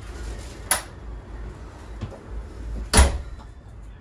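A trailer's entry door being opened and closed: a latch click a little under a second in, then a louder knock as the door shuts about three seconds in, over a low rumble of strong wind outside.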